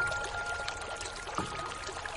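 Slow, sparse piano notes over a steady rain hiss. One high note rings and fades from the start, and another is struck about a second and a half in.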